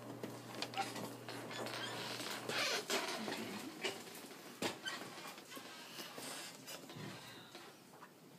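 Electric hospital bed motor humming steadily as the head of the bed is raised, stopping about two seconds in. Then bedding and a gown rustle, with light clicks and knocks as they are handled.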